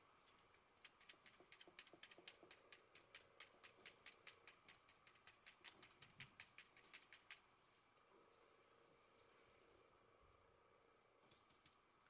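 Soft foam spouncer pounced lightly on paper through a stencil: a run of faint, quick taps, about four a second, stopping about seven seconds in.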